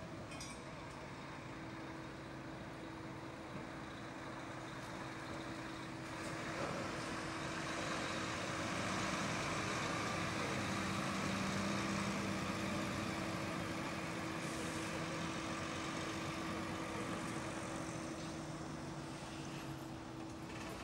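Diesel engine and tyres of a Volvo articulated lorry passing slowly close by, growing louder from about six seconds in, loudest in the middle, then easing off. A steady low hum from another vehicle idling continues underneath.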